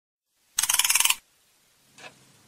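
A brief burst of rapid metallic rattling, a fast run of clicks lasting about half a second, starting about half a second in. A single soft tick comes right at the end.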